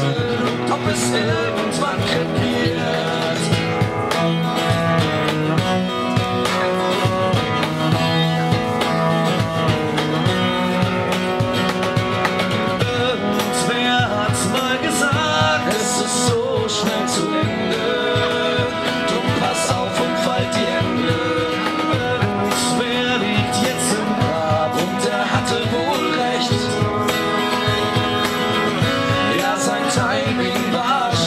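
Acoustic trio playing an instrumental passage of a folk-pop song: strummed acoustic guitar and cello over a steady cajón beat.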